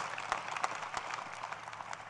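Audience applauding: many hands clapping in a dense patter that thins out and fades toward the end.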